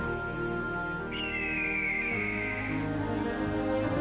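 Slow, sustained background music. About a second in, a high whistle-like tone slides slowly downward for about a second and a half.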